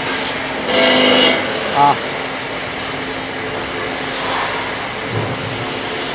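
A cordless power driver running in one short burst of about half a second, over the steady hum of a factory floor; it is driving the bolts of a combine harvester grain elevator's chain sprocket.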